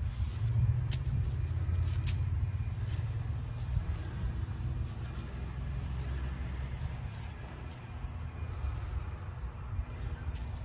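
A low rumble that is strongest in the first few seconds and slowly fades, with a couple of faint clicks about one and two seconds in.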